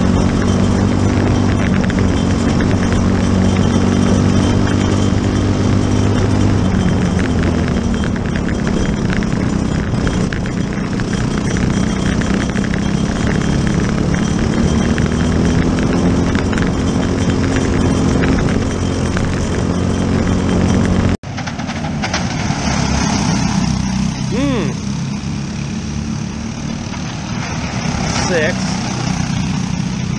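Onboard sound of a Briggs & Stratton LO206 kart engine, a four-stroke single, running at race speed. Its pitch drops as the kart slows for a corner and climbs again as it accelerates out. About twenty seconds in, the sound cuts to trackside, where karts are heard passing more faintly.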